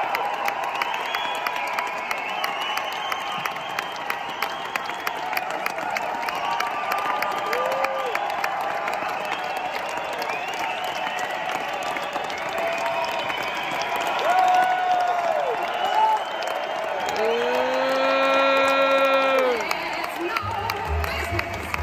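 Large audience applauding and cheering, dense clapping with scattered whoops. Near the end one loud, long held shout from someone close by.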